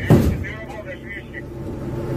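One loud shot from the armored vehicle's weapon right at the start, heard from inside the vehicle, then its engine running steadily. A faint voice shouts about half a second to a second and a half in.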